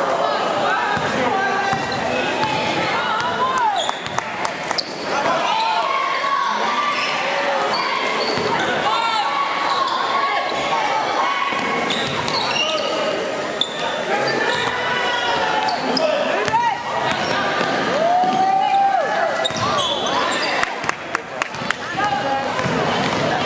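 Basketball game sounds in an echoing gym: voices of players and spectators calling out over one another, with a basketball bouncing on the hardwood floor, several quick bounces near the end.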